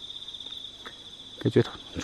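An insect trilling steadily at a high pitch, with a fast, fine pulse to the trill. A man's voice says a couple of words near the end.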